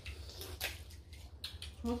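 Quiet eating noises: a few short smacks and sucks as seasoned fingers are licked at the mouth, over a low steady hum. A voice starts near the end.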